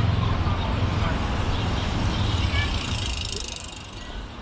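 Outdoor ambience over a fast-flowing river: a steady low rumble and rushing haze, with faint voices of passers-by. It eases slightly near the end.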